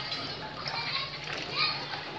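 Children's voices calling and shouting while they play, with a louder shout about one and a half seconds in.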